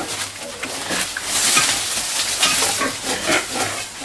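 Pigs feeding on fresh leafy fodder such as Napier grass: leaves rustling and crunching as they root and chew, with short pig calls in the second half.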